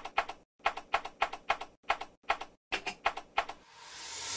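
Computer keyboard keystrokes, about sixteen crisp clicks at an uneven typing pace, some in quick pairs, as text is typed out. Near the end a rising whoosh swells in.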